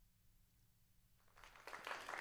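Near silence for most of the moment, then a recorded applause sound effect, triggered from the studio's soundboard, fading in and swelling over the last second or so.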